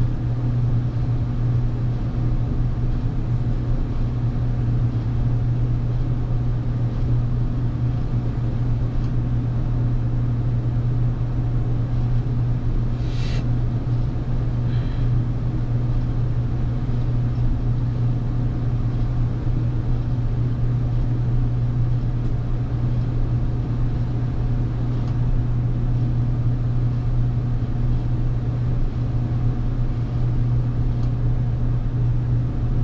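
Steady low hum inside the carriage of a stationary electric express train, from its onboard equipment running while it waits. A brief high chirp sounds about halfway through, with a fainter one just after.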